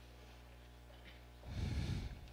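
A faint steady electrical hum, then about one and a half seconds in a short, loud puff of breath on a close microphone lasting about half a second.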